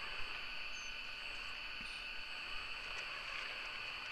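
Steady, high-pitched insect chorus, with no other distinct sounds.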